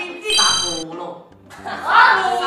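A short, bright ding sound effect about a third of a second in, ringing for about half a second over the boys' talk.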